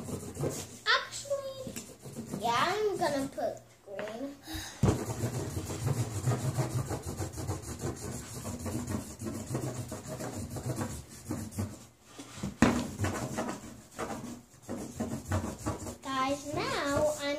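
Felt-tip markers scribbling on paper laid on a tabletop: a rapid, scratchy rubbing that runs for several seconds. A young child's voice is heard briefly near the start.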